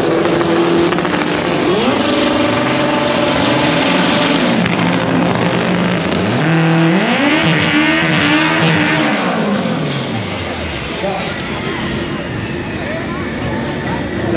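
Drag car's engine revving hard for a burnout at the start line: the revs climb about two seconds in, hold, and drop back. They then rise sharply again, hold high for a couple of seconds while the tyres spin, and fall away.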